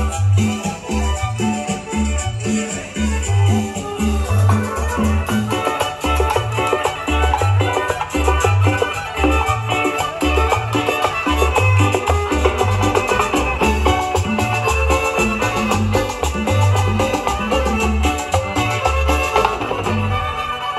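A chanchona band playing live, with violins, guitar and hand percussion over a steady, pulsing bass line in a Latin dance rhythm.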